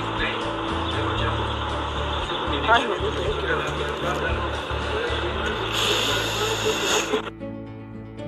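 Voices talking over music with a heavy bass line; shortly before the end the sound drops to a quieter, steadier hum.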